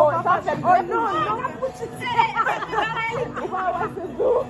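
Several people talking and exclaiming over one another in lively group chatter.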